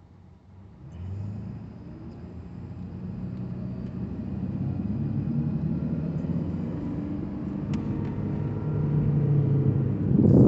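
Inside the cabin of a 2014 Toyota Prius V pulling away from a stop: about a second in a low hum sets in, and drivetrain and road noise build steadily, rising slightly in pitch as the car gathers speed.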